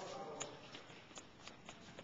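Scattered light taps and knocks of small children's feet and soccer balls on a wooden gym floor, coming irregularly.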